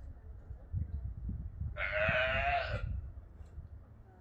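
A sea lion giving one wavering, bleating call about a second long, near the middle, over a low rumble of wind on the microphone.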